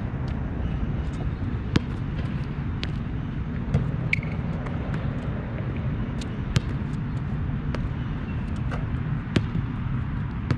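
A basketball striking the hard court and hoop several times, sharp short impacts a few seconds apart, heard over a steady low rumble.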